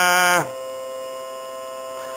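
A male voice chanting Sanskrit holds a final syllable, which ends about half a second in. After it a steady drone of a few fixed tones carries on alone, quieter than the chant.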